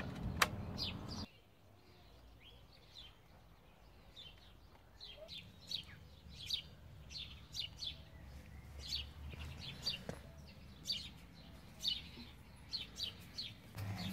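Garden birds chirping: many short, high calls scattered throughout, faint, over a low rumble that stops about a second in.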